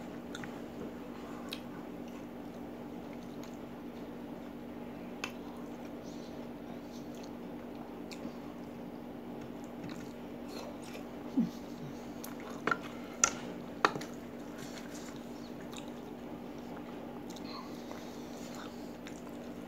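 A person chewing food, with faint wet mouth clicks, over a steady low hum. A few sharper clicks come about two-thirds of the way through.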